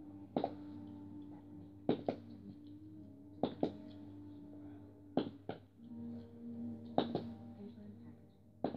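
Plastic markers flipped and coming down on a hard surface: about five sharp double clacks spaced a second or more apart, each a hit followed by a second knock, over a faint steady hum.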